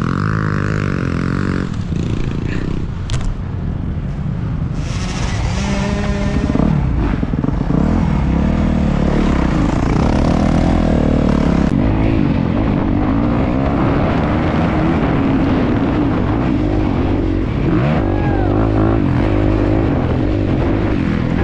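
Honda CRF250R dirt bike's single-cylinder four-stroke engine under hard riding, its pitch rising and falling with the throttle.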